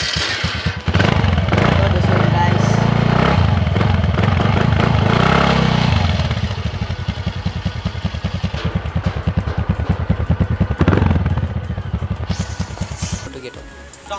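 Exhaust of a TVS Ntorq 125 scooter's single-cylinder 125 cc engine, heard close at the tailpipe. The throttle is held open for about five seconds, then the engine drops back to a chugging idle, with one short blip of throttle later on before it dies down.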